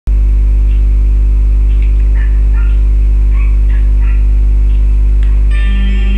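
Loud, steady electrical mains hum on the recording. A music backing track comes in about five and a half seconds in.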